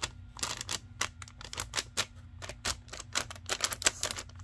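Plastic protective film crackling and a perforated metal fan grill clicking as a hand presses and rubs over a laptop cooling pad: a rapid, irregular run of sharp clicks.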